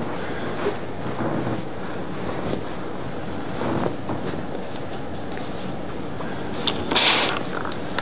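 Wool suit trousers being handled and smoothed flat on an ironing board, fabric rustling steadily. A short, louder burst of noise comes about seven seconds in.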